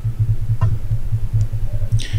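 Low hum pulsing steadily several times a second, with two faint clicks about half a second and a second and a half in.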